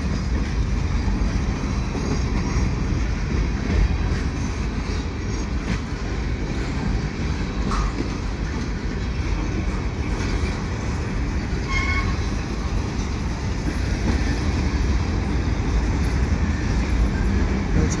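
Freight train cars rolling past close by: a steady noise of steel wheels running on the rails.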